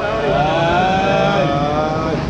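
A man's long, drawn-out "heeeee" call, held on one wavering pitch, over a low steady rumble of street traffic.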